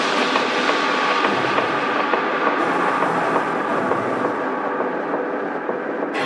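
Dark techno breakdown without kick drum or bass: a dense, noisy, rumbling synth texture with a faint held tone, its high end slowly thinning.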